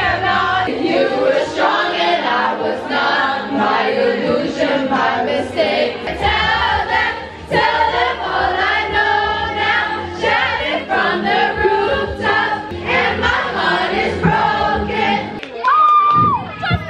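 A group of young women singing loudly along to a karaoke backing track, one voice through a handheld microphone and the rest singing together around it.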